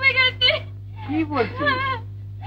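A woman's voice, high-pitched and wavering, in two stretches with a short break about half a second in, over a steady low hum from the old film soundtrack.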